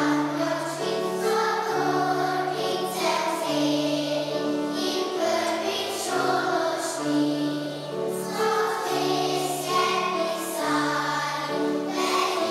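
Children's choir singing a song in unison, with held low notes from an instrumental accompaniment underneath.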